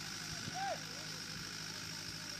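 Faint distant voices of players on a cricket field, a few short calls in the first second, over a steady low background hum.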